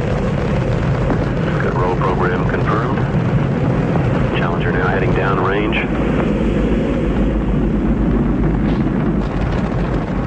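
Space Shuttle launch noise: a steady, loud rumble from the boosters and main engines, with faint radio voices over it between about two and six seconds in.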